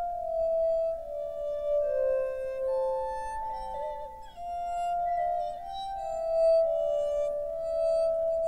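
Glass harmonica: spinning crystal bowls rubbed with wet fingertips, ringing in clear, held tones. Two or three notes sound together and change every second or so, in a slow, overlapping melody.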